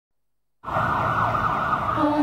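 Ambulance siren sounding, starting abruptly about half a second in after silence.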